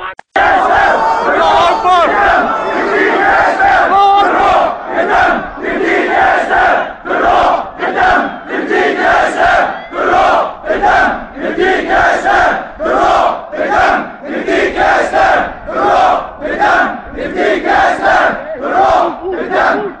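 Large crowd of protesters chanting slogans in unison, loud, in a regular beat of about one and a half shouted syllables a second. It starts just after a brief cut at the very start.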